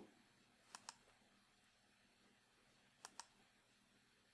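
Two faint pairs of computer mouse clicks, about two seconds apart.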